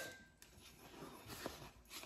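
Near silence: quiet kitchen room tone, with one faint light click about one and a half seconds in.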